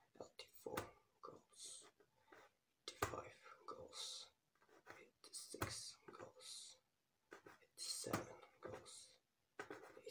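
A man whispering close to the microphone, with sharp hissing s sounds every second or two and a few short clicks in between.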